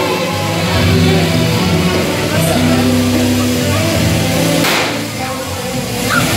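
Loud dance music with steady held notes, and about three-quarters of the way through a short rushing burst of noise as a confetti cannon fires.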